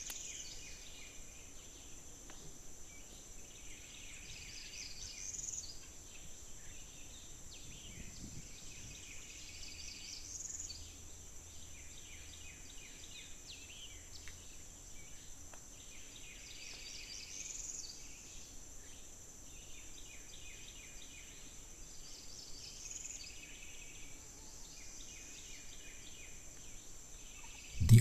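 Swamp ambience: a steady high-pitched insect drone, with a short burst of chirping calls that recurs about every five to six seconds.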